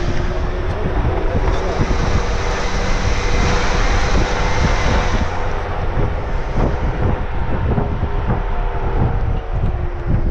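Jeep driving along a rutted dirt trail: a steady engine drone under a heavy rumble, with frequent knocks and bumps as the tyres go over the ground, and wind on the outside-mounted microphone.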